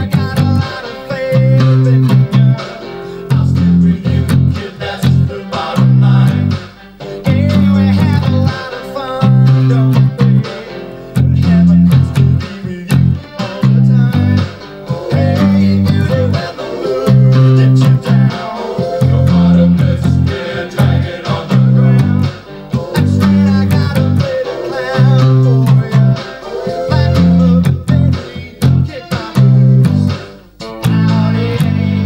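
Electric bass guitar playing the song's intro riff in octaves, a repeating pattern of strong low notes, over a full band backing of guitars and drums.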